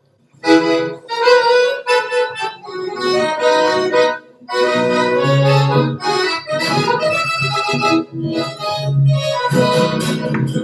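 A piano accordion plays the opening phrases of a Chilean cueca. It comes in about half a second in, with deep bass notes under the melody and brief breaks between phrases about four and eight seconds in.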